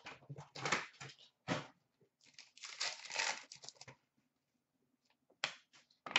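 Hockey card pack wrapper being torn open and crinkled, with the cards inside rustling as they are pulled out: short irregular bursts of rustle, thickest a couple of seconds in, and a few sharp clicks near the end.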